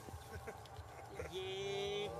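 A macaque call: a long, steady, even-pitched cry that begins about a second and a half in, after some faint rustling in dry leaves.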